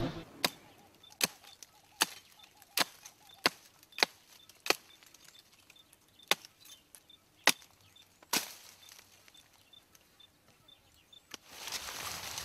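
Sharp chopping blows of a blade cutting into a tree branch, about ten strikes roughly one every three-quarters of a second, which stop after about eight seconds.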